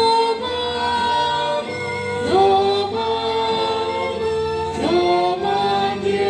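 Voices singing a hymn in long held notes, sliding up into the next note about two seconds in and again near five seconds, over a steady low accompaniment.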